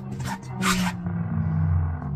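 Xenopixel lightsaber's sound-font hum, a low hum that shifts in pitch as the blade is swung, with swing whooshes, the loudest less than a second in.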